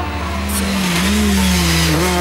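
Volkswagen Golf Kit Car rally car's four-cylinder engine revving hard under acceleration, its note rising and falling as it drives through.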